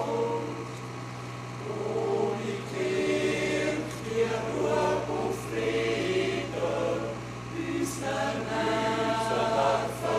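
A choir singing slow, sustained chords, the notes shifting every second or so.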